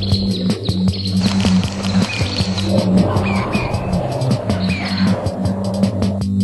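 Soundtrack music: electronic music with steady sustained bass notes and a regular percussive beat, with short chirping glides high above.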